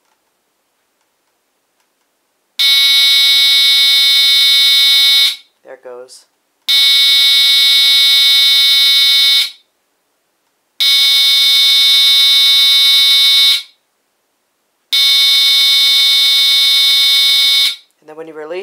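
HeathKit Smoke Sentinel 30-77L photoelectric smoke alarm (made by Chloride Pyrotector) sounding its mechanical horn on a test-button press, in a pulsing pattern. After about two and a half seconds of silence, the delay of a photoelectric unit's self-test, it gives four loud, steady blasts of about three seconds each, a little over a second apart.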